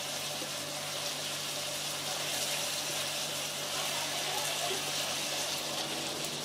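Chicken hearts and onions sizzling in oil in a frying pan, a steady hiss.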